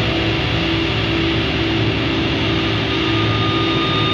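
Heavy distorted guitars and bass of a beatdown hardcore track holding a final chord as a dense, noisy wash, with a thin high feedback tone coming in a little past halfway.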